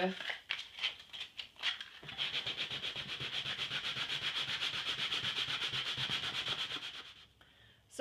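Folded 220-grit wet-or-dry sandpaper rubbed by hand over cured leather filler putty in quick, even back-and-forth strokes, several a second, knocking down a ridge and small bumps in the repair. Light handling sounds come first, and the sanding stops about a second before the end.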